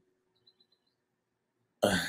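Near silence, then near the end a man abruptly breaks into a laugh.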